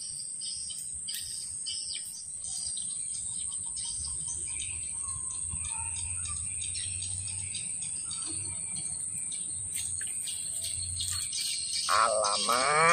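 Steady high-pitched insect chorus with scattered bird chirps in swamp forest.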